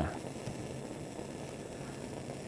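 Steady low rushing noise of a lit Bunsen burner heating a conical flask of water-based ink that is just coming to the boil.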